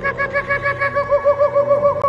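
Laughing kookaburra calling: a rapid run of repeated cackling notes, about seven a second, growing louder toward the end.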